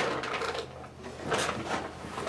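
Rustling of a duvet as a small dog shifts about on a bed, in a couple of short bursts.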